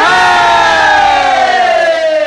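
A long drawn-out vocal holler in a Bhojpuri Holi folk song, sung without accompaniment: held on one note, then slowly sliding down in pitch and fading away.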